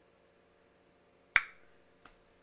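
Near silence, broken by a single sharp click a little over halfway through that fades quickly.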